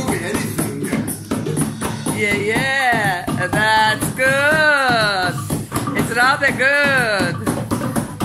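A barrel-shaped wooden hand drum played with quick hand strokes in a running rhythm. From about two seconds in, high voices whoop and call along with swooping, rising-and-falling pitch.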